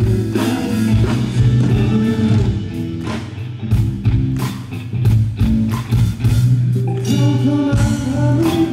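Live band music from a pop-rock song: guitar and a steady bass line over a drum kit, with regular drum hits.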